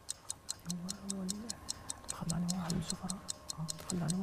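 A quiz-show countdown timer sound effect: steady, quick, clock-like ticking, several ticks a second, marking the time allowed to answer. Low, quiet talk runs under it.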